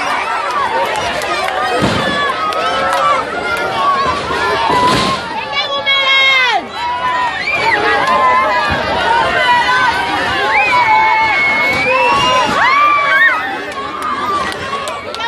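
Crowd of spectators, many of them children, shouting and calling out over continuous loud chatter, with a couple of dull thumps about two and five seconds in.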